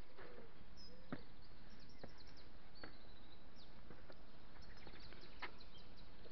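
Faint birdsong, short high chirps and brief trills, over a steady outdoor noise bed, with a few light clicks.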